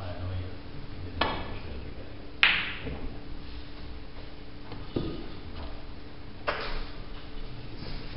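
Snooker shot: four sharp clicks of the cue and snooker balls striking, spaced one to two seconds apart, the second about two and a half seconds in the loudest and ringing briefly. A faint steady hum runs underneath.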